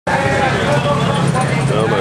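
Motor vehicle engines running steadily at the roadside, a low hum under people talking.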